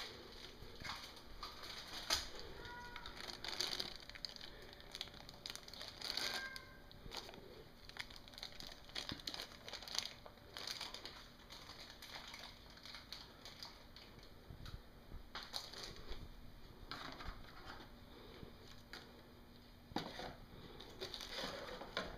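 Packaging being handled: crinkling and crushing of wrapping with scattered clicks and knocks, coming and going in short bouts.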